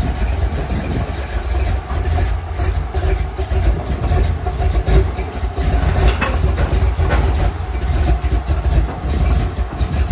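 Pickup truck engine idling steadily, a low, even running note.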